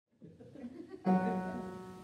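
Live solo female singing with piano: after a moment of faint room sound, a woman sings the first word about a second in and holds it on one note over a piano chord that fades away.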